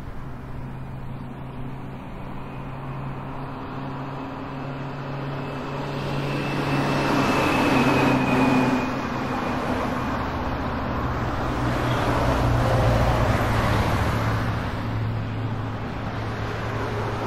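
Avant-garde music for wind orchestra, double basses, Hammond organ and metal percussion: a dense, sustained cluster over a steady low drone, swelling twice to loud peaks about eight and thirteen seconds in.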